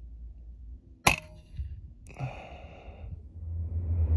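A single shot from a moderated FX Wildcat .22 PCP air rifle about a second in: one short, sharp crack. A longer, fainter noise follows about a second later, and music swells in near the end.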